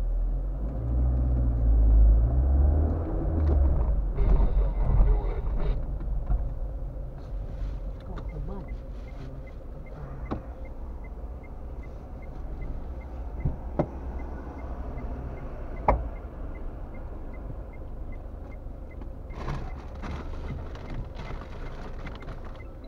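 Car cabin: engine and road rumble while driving for the first few seconds, then a quieter idle once the car has stopped. Over the idle comes a steady ticking of about two clicks a second, the turn-signal relay, plus a few sharp knocks, the loudest about two-thirds of the way through.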